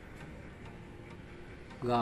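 A few faint clicks, most likely computer keyboard keys, over quiet room tone; a man's voice starts near the end.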